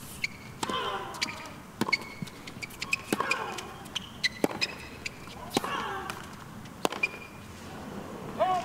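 A tennis rally: a serve and then racket strings hitting the ball about every second and a quarter, six strikes in all. Every other strike, on the near player's own shots, is followed by a short falling grunt.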